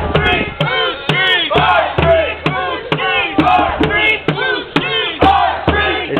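A crowd of protesters chanting in unison, a loud rhythmic shouted chant of a couple of syllables a second.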